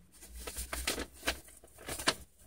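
Paper rustling and crinkling, a string of short crackles and taps, as the contents are pulled out of a piece of mail.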